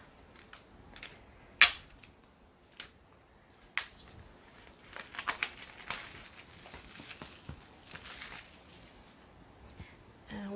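Clear plastic wrap being torn off a small cardboard product box and crinkled in the hands. A few sharp snaps come in the first four seconds, the loudest about one and a half seconds in, followed by a few seconds of steady crinkling.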